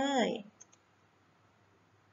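A woman's voice ends a word about half a second in, followed by two faint, short clicks and then near silence with only room tone.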